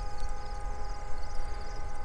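A distant vehicle horn held on one steady, multi-toned note. The honking is taken for the self-propelled cob wagon signalling the trucks.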